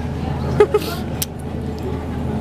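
Steady low background rumble of a shop floor, with a few short clicks and a brief soft vocal sound about half a second in.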